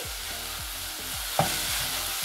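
A spatula stirring and scraping dry grated coconut in a non-stick saucepan over a gas flame, with a light dry sizzle now that the cooking water has evaporated. There is a sharper scrape a little past halfway.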